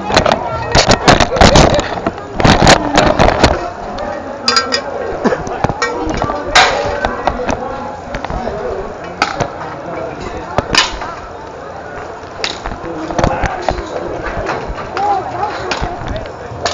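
A body-worn GoPro jolted through a short bull ride: a rapid run of loud knocks and thuds over the first three to four seconds, then scattered bumps. Voices murmur behind.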